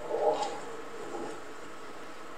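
A brief, quiet murmur of a person's voice near the start, ending with a faint click, followed by a fainter murmur about a second later, over steady room hiss.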